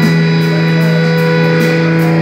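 Electric guitar sustaining one steady note through an amplifier, ringing on unchanged with no strumming or drums.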